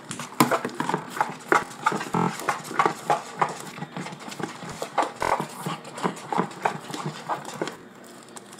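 A spoon clacking and scraping against a bowl as slime is stirred, in an uneven run of short knocks, two or three a second.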